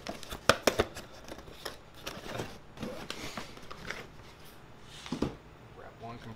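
Cardboard speaker boxes being handled: flaps rustling and scraping, with a quick run of sharp knocks in the first second and another knock a little after five seconds.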